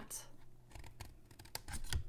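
Small scissors snipping through scored cardstock, with a few short cuts about one and a half seconds in.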